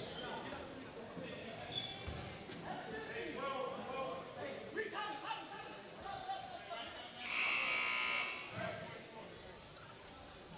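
Indistinct voices and crowd chatter echoing in a gymnasium, then a gym buzzer sounds once for about a second near the end.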